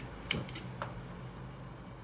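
A few faint, light clicks from a pot of hot water holding floating yerba mate and a lump of charcoal, over a steady low hum.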